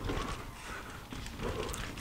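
Mountain bike clattering over rocky trail at speed: irregular knocks and rattles as the bike skips over the rocks.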